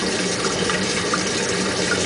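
Tap water at full pressure driving a home-made Tesla disc turbine built from CDs: a steady rush of running water with a faint low hum underneath.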